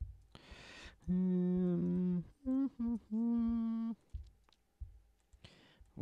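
A sound built from a processed sample, played back from the computer. A short hiss comes first, then a held low note of about a second with a small dip in pitch, then two quick higher notes and another held note; the notes are cut off sharply at the top, as by a high-cut EQ.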